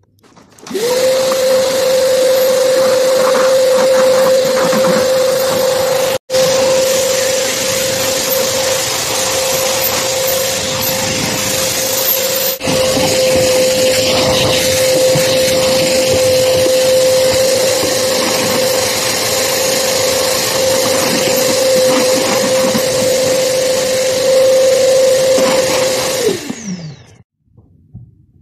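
Canister vacuum cleaner running at a steady hum with a hiss of suction. It starts up about a second in, cuts out briefly twice, and near the end is switched off, its pitch falling as the motor winds down.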